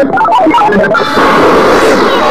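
Loud, heavily distorted, glitch-edited music. A run of quick, short melodic notes gives way about a second in to a harsh wash of distorted noise, with a sweep rising and falling near the end.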